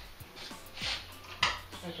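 Steel sheet-metal patch panel being worked in a hand-lever shrinker-stretcher: a few sharp metallic clacks as the jaws grip and stretch the panel's edge in small bites to put a slight curve in it. The sharpest clack comes about one and a half seconds in.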